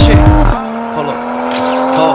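Hip hop track with a rapped word; about half a second in, the bass and beat drop out. Steady held tones remain through the break, heard as a car's tyres squealing.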